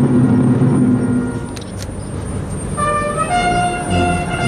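Military brass band playing: a held low chord that fades about a second and a half in, then brass entering near the end with long held notes that step from pitch to pitch.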